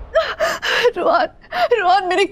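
A woman crying in distress: gasping sobs and whimpering cries in short, broken bursts.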